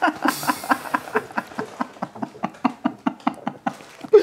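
Beer glugging out of a bottle into a tasting glass: a quick, even run of glugs, about seven a second, with a brief fizzy hiss as the pour starts. The glugs stop just before the end as the pour finishes.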